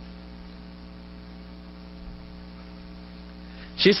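Steady electrical mains hum with a faint hiss in the background of a speech recording. A man's voice cuts in just before the end.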